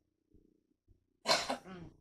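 A woman's short laugh, a quick two-beat chuckle with a brief trailing breath, coming a little over a second in after a pause.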